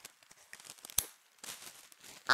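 Faint rustling and small ticks as a plush dog toy is handled and pulled at, with one sharp click about halfway through.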